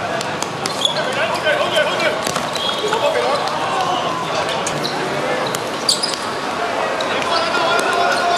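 Players' voices calling out during a five-a-side football game, with sharp thuds of the ball being kicked and bouncing on the hard court.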